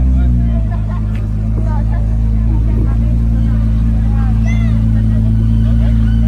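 Ferrari 296's twin-turbo V6 running at a low, steady idle as the car creeps by at walking pace, its pitch dipping slightly just after the start. Chatter from people nearby over it.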